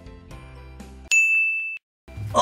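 Faint background music, then about a second in a single bright ding sound effect that rings as one steady high tone for under a second and cuts off abruptly.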